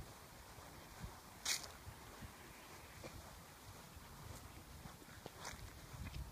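Faint footsteps on grass, with a brief rustling hiss about one and a half seconds in and a weaker one near the end.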